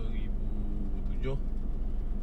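Steady low rumble of a running vehicle with a steady hum underneath, and a short vocal sound about a second in.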